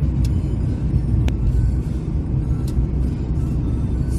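Steady low rumble of a car's engine and tyres heard from inside the cabin while driving at road speed. Three faint short clicks come through over the rumble.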